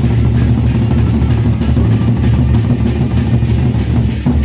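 Gendang beleq ensemble playing: large Sasak barrel drums beaten with sticks in a dense, loud, fast rhythm with a heavy low rumble and sharp, crisp strikes on top.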